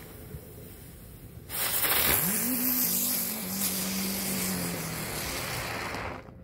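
A firework ground spinner (Comet 'Geisterstunde') burning and spinning: a loud hiss starts about one and a half seconds in, with a low humming tone that rises briefly and then holds steady while it turns, and the hiss stops at the end. It spins freely rather than sticking.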